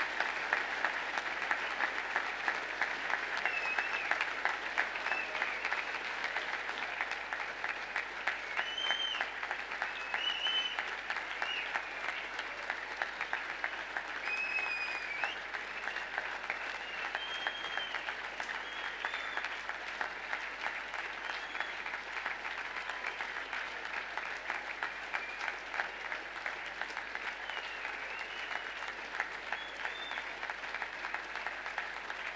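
Long, sustained applause from a large crowd of students clapping in a hall, dense and even, with scattered short high-pitched calls over it.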